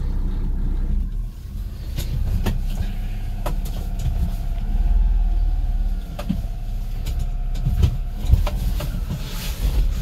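Honda Acty mini truck's small three-cylinder engine running at low speed while the truck is driven slowly, heard from inside the cab as a steady low rumble. A few sharp clicks and knocks come through, about two seconds in and again near the end.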